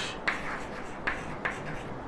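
Chalk writing on a blackboard: a run of short, separate strokes, a couple each second.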